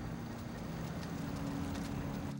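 City street traffic noise: a steady wash of scooter and car sound, with low sustained music notes held beneath it.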